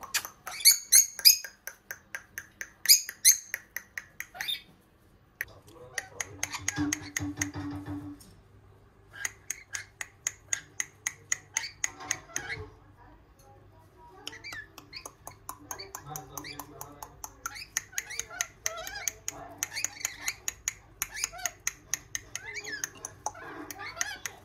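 Rainbow lorikeets chattering: rapid trains of high-pitched clicks and chirps with squawks, loudest in the first few seconds, quieter for a moment twice.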